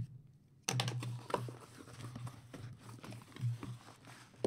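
Cardboard shipping case being opened and handled: flaps scraping and rustling, with irregular sharp taps and clicks that start suddenly about a second in.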